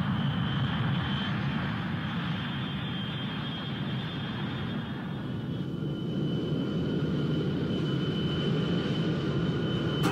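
Steady engine rumble with a faint high-pitched whine that drops slightly in pitch about halfway through.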